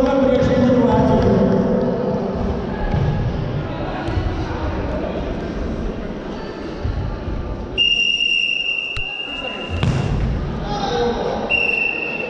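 Referee's whistle in an echoing sports hall during a futsal game: one long steady blast about eight seconds in, and another starting near the end. A ball is kicked with a thud about ten seconds in, over voices from players and spectators.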